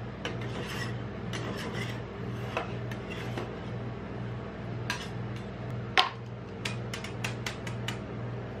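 Metal spatula scraping across the frozen steel plate of a rolled-ice-cream pan in repeated strokes, clearing off leftover frozen ice cream. A sharp tap comes about six seconds in, followed by a run of lighter clicks, over a low steady hum.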